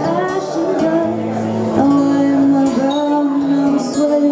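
A woman singing live into a microphone over acoustic guitar, holding one long note through the second half.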